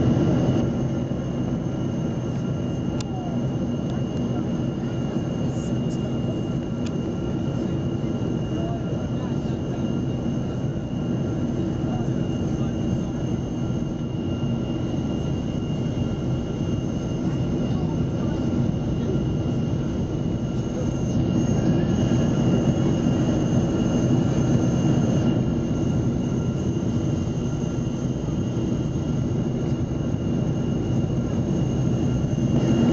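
Cabin noise of a Boeing 777 on descent, heard from a window seat beside its General Electric GE90-85B turbofan: a steady, deep rushing drone with a few thin, steady high whines above it. It grows slightly louder about two-thirds of the way through, then settles.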